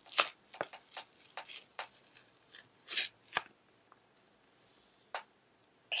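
Single-use sheet-mask sachet torn open at its notch by hand, with crinkling and ripping in a run of short bursts over the first three and a half seconds and one more crackle near the end.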